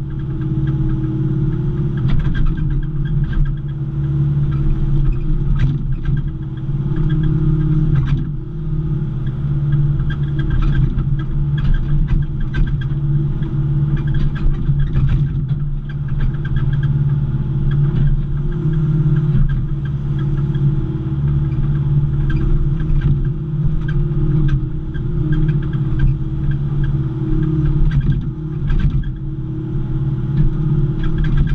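John Deere 190E excavator's diesel engine running steadily under working load, heard from inside the cab, with irregular clanks and knocks throughout as the boom and bucket move and push soil.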